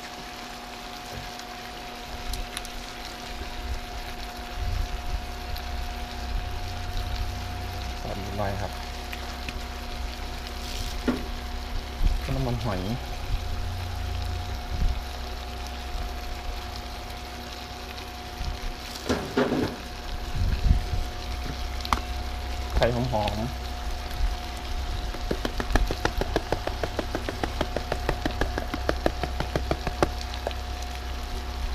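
Spaghetti with seafood and sauce sizzling as it stir-fries in a large pan, with sauce poured in from a bottle. Near the end, quick light ticking as a seasoning powder is shaken over the pan.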